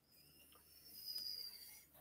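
Near silence between two speakers, with a faint short sound about a second in.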